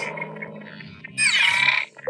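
Electronic sound effects of an animated title sting: a fading tone, then a little over a second in, a loud sweep falling in pitch that cuts off near the end.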